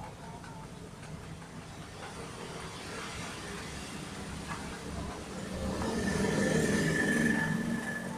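A vehicle engine rumbling, swelling to its loudest a little past the middle and then easing off, as if passing by.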